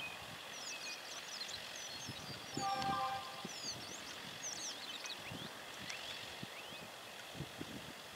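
Birds chirping and singing in scattered short calls over quiet outdoor ambience, with a brief faint tone about three seconds in.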